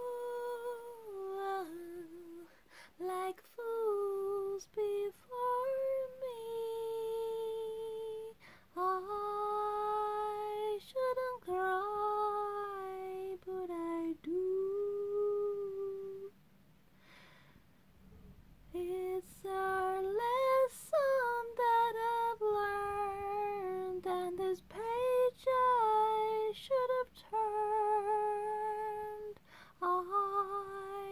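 A woman singing a slow melody alone, with no accompaniment, holding long notes and breaking off for about two seconds just after the middle.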